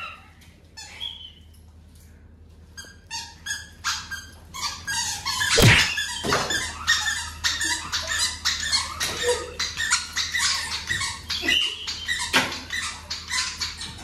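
A leather belt swung by a blindfolded player: a run of sharp slaps and smacks, the loudest about six seconds in and again near twelve seconds, with short high yelps.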